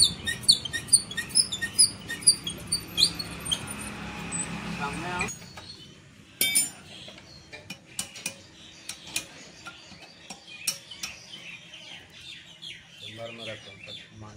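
Small birds chirping rapidly over a steady low hum, which cuts off suddenly about five seconds in. After that come scattered sharp metal clinks of hand tools on an engine's cylinder head.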